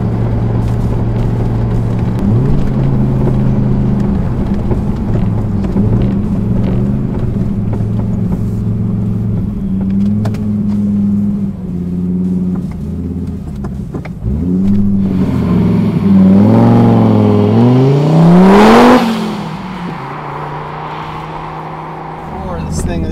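Audi urS4's turbocharged 2.2-litre inline five-cylinder engine pulling the car, heard from inside the cabin, its pitch stepping up and down. Near the end it is pushed hard: a rising note for about three seconds, the loudest part, that drops off abruptly.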